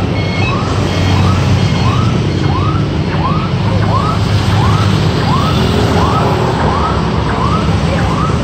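A steady low motor hum, with a short chirping tone that rises and falls, repeating about twice a second.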